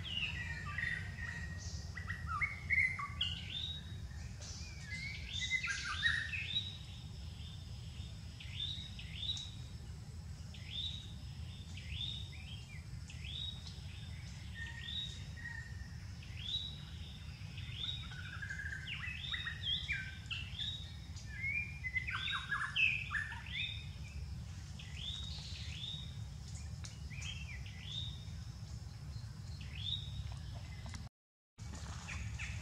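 Birds chirping: a long run of short, high chirps that slide downward, coming roughly once a second, with busier clusters near the start and about two-thirds of the way in. Beneath them runs a steady low hum.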